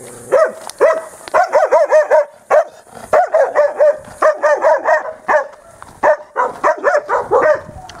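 A small dog barking fiercely in quick, high-pitched runs of several barks each, with short pauses between runs: a territorial dog warning off a stranger passing its yard.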